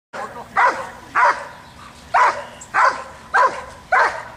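Doberman barking at a protection helper in an IPO hold-and-bark exercise: six barks at about one every half second to second, with a longer pause after the second.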